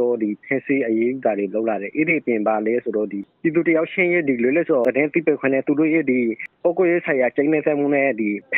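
Speech only: a man narrating continuously in Burmese.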